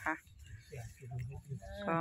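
A faint, low animal call in a short pause between spoken phrases.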